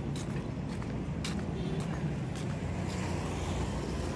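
Steady road traffic: a low engine and tyre rumble from passing vehicles, with a few faint ticks.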